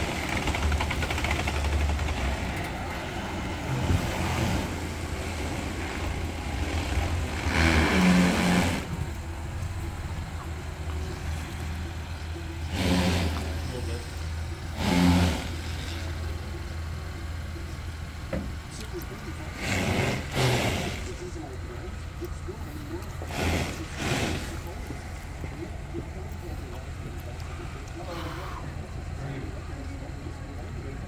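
Chevrolet Blazer RS engine idling with a steady low hum as the SUV creeps slowly back and forth, with a few brief louder bursts of sound.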